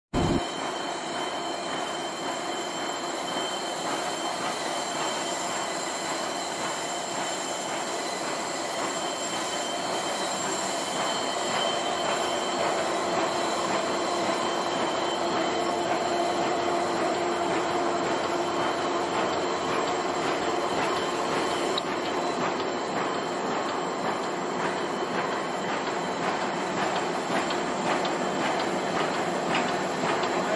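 Automatic non-woven cap making machine running: a steady mechanical noise with faint whining tones. It grows slightly louder about twelve seconds in.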